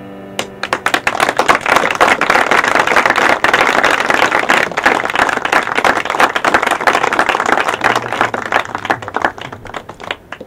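Audience applauding after a piano piece, beginning about half a second in as the piano's last chord fades, a dense steady clapping that thins out near the end.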